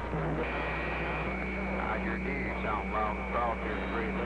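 Yaesu FT-2000D transceiver receiving a distant station: a faint voice through static, with a steady whistle from another signal that comes in about half a second in, over a low hum.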